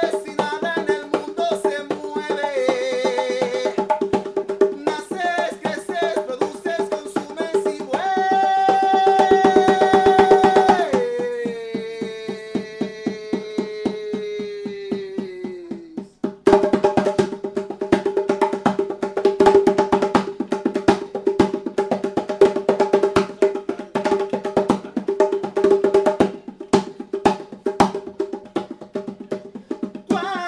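Live music: a hand drum struck in quick, dry strokes over a steady drone. About a third of the way in a loud sung note is held for a few seconds, then slides slowly downward while the drumming stops; the drumming starts again about halfway through.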